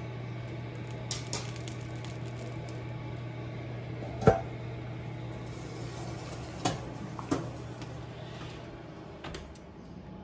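A stainless steel pot lid being set on a braising pot in the oven: a sharp metal clank with a brief ring about four seconds in, then a few lighter clinks later on. A steady low hum runs underneath.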